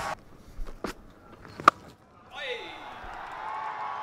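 A cricket bat strikes the ball with one sharp crack a little under halfway through. It is followed by a building wash of stadium crowd noise as the ball goes up for six.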